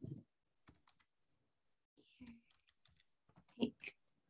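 Faint, irregular clicking of computer keyboard keys as a word is typed, with a brief murmur of voice about two seconds in.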